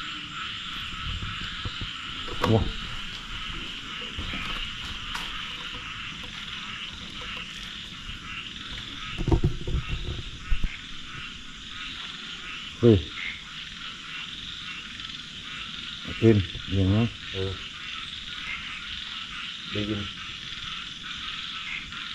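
A dense chorus of frogs croaking steadily, with a short low noise about nine seconds in.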